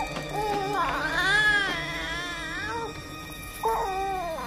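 A voice crying in drawn-out wails, several in a row, each rising and falling in pitch, over background music.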